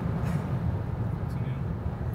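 Steady low road and wind noise inside the cabin of a Lucid Air electric sedan as it slows under braking from about 150 km/h.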